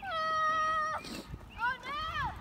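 A child's high voice: one long, steady held call for about a second, then short calls that rise and fall near the end.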